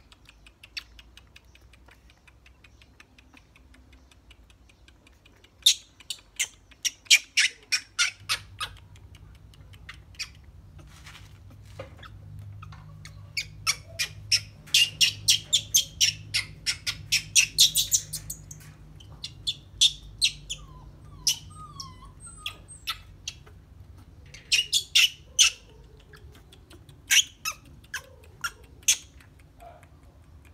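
Runs of short, sharp, high-pitched animal chirps or squeaks, several a second, coming in bursts with quieter gaps between.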